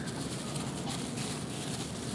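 Faint rustling and crinkling of clear plastic bags handled by hand as miniature figures are unwrapped, over steady room noise.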